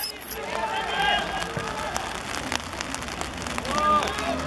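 Players and spectators shouting and calling across an outdoor football pitch, loudest near the start and again just before the end, with no clear words.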